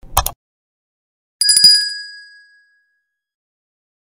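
Subscribe-button animation sound effects: a short click right at the start, then a bright bell ding about a second and a half in that rings out and fades over about a second.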